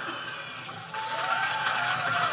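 Large concert audience clapping and cheering, growing louder about a second in.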